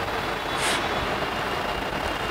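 Steady background noise, an even hum and hiss, with one brief soft hiss about two-thirds of a second in.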